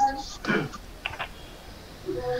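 A few quick clicks of a computer keyboard about a second in, after a brief voice sound at the start.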